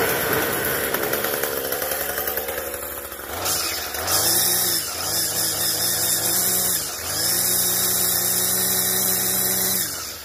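Troy-Bilt TB80EC 27cc two-stroke string trimmer engine running just after starting, settling over the first few seconds. It is then revved up twice and held at high revs, with a short dip between, and drops back near the end. At high revs it spins the trimmer head on its newly replaced gearbox, showing the head now turns.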